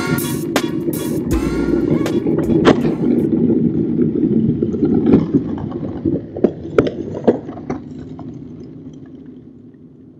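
A rap track with heavy bass and vocal lines plays and ends about three seconds in. Then skateboard wheels roll on asphalt in a steady rumble, with a few sharp clacks of the board, and the rolling fades away near the end.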